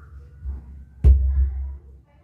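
Ground Zero GZTW 12 MK2 subwoofer in a plastic paint-bucket enclosure, fed a very low test tone. A short low thump comes about half a second in; a sharp thud about a second in is followed by a deep rumble that lasts most of a second.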